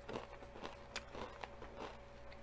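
Faint, close-up sounds of a person chewing a mouthful of braised chicken thigh in tomato sauce with the mouth closed: a few soft, irregular wet mouth clicks.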